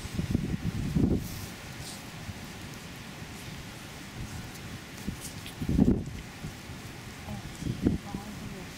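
Wind buffeting the microphone in a few low gusts over a steady outdoor rush, the strongest about six seconds in, with faint rustling and ticks.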